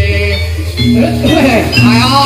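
Loud live Javanese jathilan-style gamelan music with deep sustained bass notes, and a voice whose pitch rises and falls over it about a second in.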